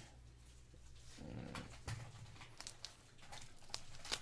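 Faint handling of a wax-paper card pack being worked open, with a few light clicks and rustles over a low steady hum. A brief soft, low sound comes a little over a second in.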